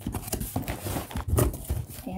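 Plastic-wrapped snack packs and sanitary-napkin packages crinkling and knocking as a hand rummages among them in a cardboard box, in irregular bursts of rustle and light taps.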